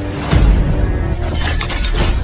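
Film sound effects of crashing, breaking and shattering over a deep rumble, mixed with the film's music. A loud crash comes about a third of a second in, and a dense run of cracking crashes follows in the second half.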